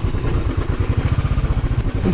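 Motorcycle engine running at low speed with a rapid, even beat, ridden through a slippery, muddy stretch of road.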